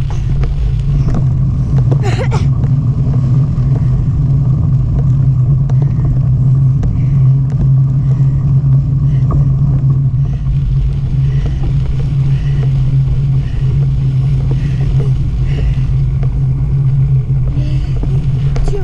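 Steady low rumble of a bicycle rolling over a sandy dirt trail: tyre noise and wind buffeting the bike-mounted camera's microphone.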